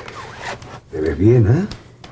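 A man's voice sounds briefly, rising and falling, for under a second about a second in, after a soft rustle.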